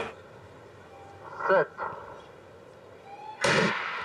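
A hushed stadium, then the starter's call of "Set" over the loudspeakers. Nearly two seconds later the starting gun fires for a sprint start with a sudden crack, followed by a rush of crowd noise.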